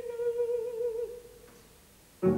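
A mezzo-soprano's voice holding a soft sung note, its vibrato narrowing as it fades out about a second in, followed by near silence.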